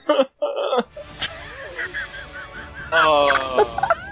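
Anime soundtrack voices: short vocal exclamations, then a quieter stretch with wavering vocal sounds, then a loud drawn-out cry from about three seconds in.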